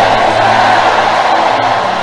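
Soft background music of low held notes under a steady wash of sound, growing slightly quieter towards the end.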